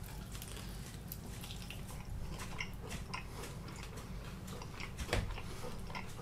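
Two people biting into and chewing sauced chicken wings, with faint wet mouth sounds and small scattered clicks over a low room hum, and a slightly louder sound about five seconds in.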